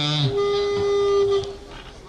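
A single steady pitched note, held for about a second and then fading away, with the tail of a man's speech just before it.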